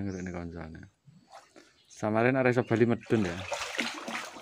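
A crowd of catfish thrashing at the surface of a shallow pool, splashing the water in a short burst about three seconds in. A man's voice is heard before it.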